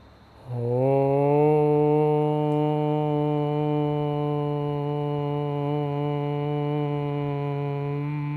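A man's voice chanting one long held note on a steady pitch, starting about half a second in and sustained to the end.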